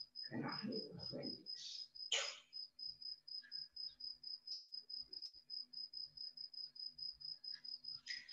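Faint high-pitched chirping that repeats steadily about four times a second, with some faint murmured voices in the first couple of seconds.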